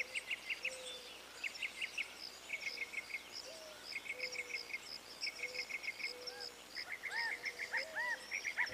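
Birds chirping: quick runs of three to five short chirps repeating about once a second over soft whistled notes, with more arching calls joining near the end.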